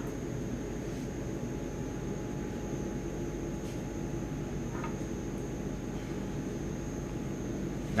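Steady background hum and hiss of a small room, with no distinct events.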